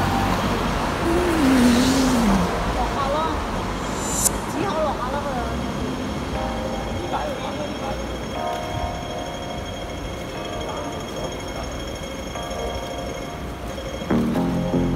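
City street noise: a steady low traffic rumble with passing cars, a voice heard briefly in the first few seconds, and faint music with held tones in the second half.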